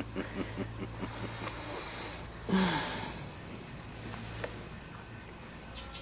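A man sighing and breathing heavily, with a few soft chuckles at first and one loud exhale with a falling groan about two and a half seconds in. He is breathing through a costume skull head's mask that has no breathing hole cut in it.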